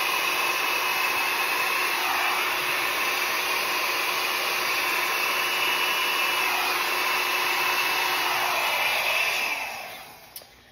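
Handheld hair dryer running steadily on high, blowing poured acrylic paint out into a bloom, its pitch dipping briefly a couple of times. It is switched off near the end.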